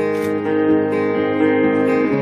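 Acoustic guitar with a capo, strummed chords ringing steadily.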